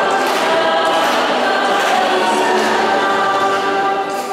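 Many voices singing together in long held notes, echoing in a large church.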